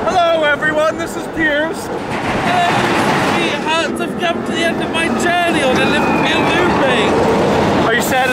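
Riders' voices, with no clear words, over the rumble of the roller coaster train rolling along its track.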